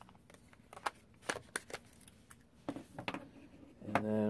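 Irregular light plastic clicks and taps as the snap-on back covers of Samsung Galaxy S5 phones are pressed into place and the phones are handled, with a few duller knocks near the end as phones are set down on a hard table.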